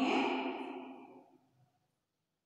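A woman's voice singing a drawn-out line with held notes, fading away about a second in.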